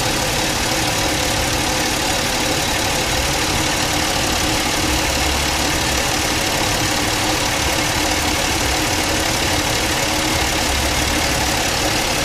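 Car engine idling steadily, heard close up from the open engine bay.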